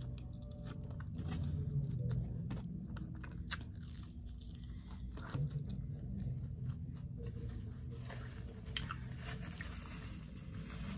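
Close-up biting and chewing of a sausage, egg and biscuit breakfast sandwich, with many small wet mouth clicks throughout.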